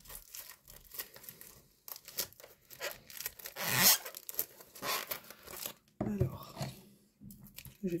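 Packaging on a small boxed kit being torn and picked open by hand without scissors: irregular ripping and crinkling, loudest about halfway through.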